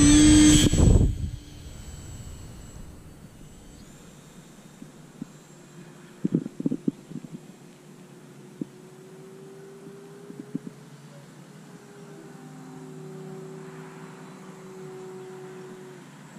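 Electric RC sport glider's brushless motor and propeller whining at full throttle close by for about the first second, then dropping away suddenly to a faint, distant drone as the plane climbs out. A few sharp clicks come around six to seven seconds in.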